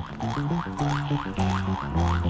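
A Turkish orchestral instrumental record starting up: a twanging instrument makes a repeated rising boing, about four a second, over a bass line and band backing. The twang is taken for a jaw harp (Jew's harp), though this is not certain.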